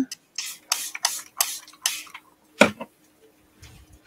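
A paper towel wiping wet ink off a plastic stencil: a quick run of short rubbing strokes, then one sharp tap about two and a half seconds in as the stencil knocks against the work surface.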